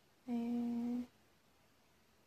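A woman's voice humming one short, steady note at an even pitch, lasting under a second. It stops about a second in, leaving faint room tone.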